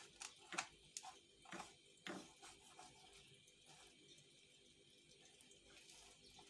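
Faint scraping strokes of a silicone spatula stirring melting sugar in a non-stick pan, about six soft strokes in the first half.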